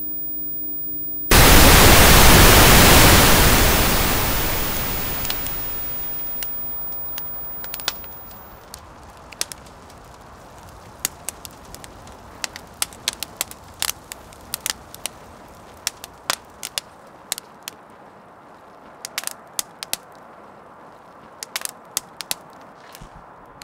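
After a brief steady hum, a sudden loud burst of hiss like television static sets in about a second in and fades away over several seconds. It gives way to a wood fire in a metal burn bin crackling, with many irregular sharp pops and snaps over a low hiss.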